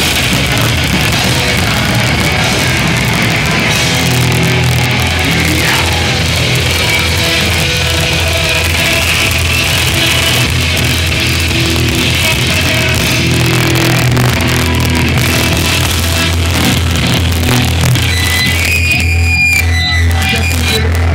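D-beat crust punk band playing live at full volume: distorted electric guitars, bass and pounding drums. Near the end the full band drops away, leaving a few ringing guitar tones as the song closes.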